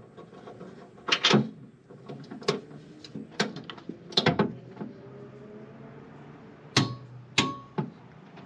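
Hand wrench and bolts clinking and knocking against a truck bed rack's metal mounting bracket as the bolts are fitted and snugged down: about half a dozen separate, irregular clicks, the last two near the end ringing briefly.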